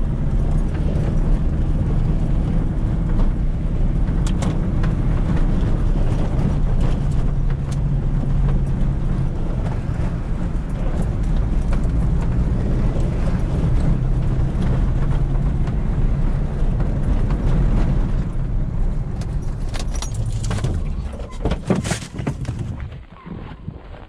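Pickup truck engine droning steadily at low speed, heard from inside the cab, with scattered small rattles and clicks. Near the end the engine note falls away as the truck stops, and a few sharp clicks follow as the driver's door is opened.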